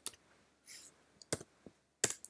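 A few isolated computer keyboard key presses: a light click at the start and a sharper one a little past halfway, as the Y key is pressed to confirm saving a file in a terminal editor.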